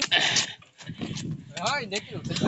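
A person's voice calling out briefly near the end, after a short hissing burst of noise at the start.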